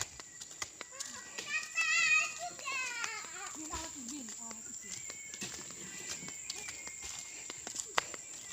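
A young child's high voice calls out with a wavering pitch about a second and a half in, followed by a brief lower vocal sound, over scattered small clicks.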